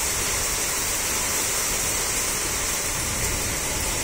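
Heavy rain pouring down, a steady, even hiss with no let-up.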